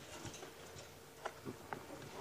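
Faint, scattered clicks and crunches of lions feeding on a buffalo carcass, three or four small clicks about a second in, over a quiet background.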